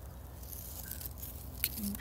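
A quiet pause with faint steady background noise. There is a single click about one and a half seconds in, then a brief low hum of a voice just before speech resumes.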